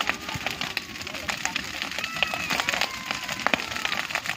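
Bonfire of dry branches and leaves crackling, with many irregular sharp pops.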